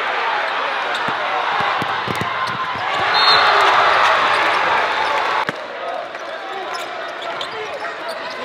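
A basketball dribbled on a hardwood gym floor over the crowd noise of a packed high-school gym. The crowd gets louder a few seconds in, then the sound drops suddenly at an edit.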